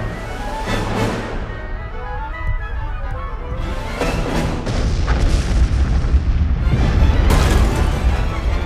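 Dramatic orchestral film score with deep booms, growing louder about halfway through as a heavy low rumble builds underneath.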